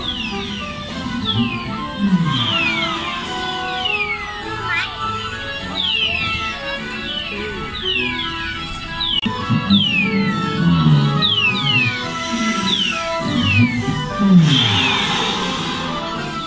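Dark-ride soundtrack music with quick falling whistle-like sound effects repeating several times a second, and a short rushing noise near the end.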